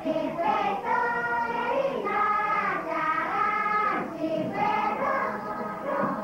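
A choir of voices singing together in held, sustained notes that step from one pitch to the next every half second to a second.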